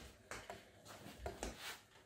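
Faint, scattered light clicks and rattles from a small balloon-powered car with CD wheels on wooden skewer axles as it rolls across a hard floor.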